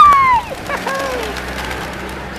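A short flurry of pigeon wingbeats as the flock takes off, then voices calling out: a falling exclamation followed by a softer call about a second in.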